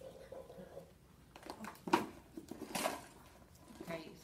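Handling of bedside supplies on an overbed table: a plastic wash basin set down, with a couple of sharp knocks and light rustling, the loudest knock about two seconds in.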